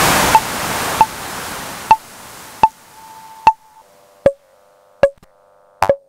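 Serge modular synthesizer patch: a loud burst of white noise that fades away in steps over about three seconds, over a steady pulse of sharp clicks about every 0.8 seconds. Beneath them a quiet held tone drops in pitch about four seconds in.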